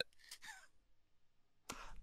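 Mostly near silence in a pause between two speakers on a call, with a faint short breath about half a second in and a brief breath or mouth noise near the end.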